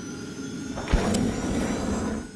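Logo sting sound effect: a rushing whoosh with a sharp low thump about a second in, the rush swelling again after the hit.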